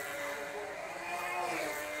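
The 2.5 cc two-stroke glow engine of a tethered speed model car running flat out as the car circles the track, gathering speed in its early laps. Its pitch swings up and down about once a lap as the car passes.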